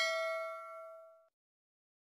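A bell-like chime sound effect ringing out with several clear tones and fading away, gone about a second in.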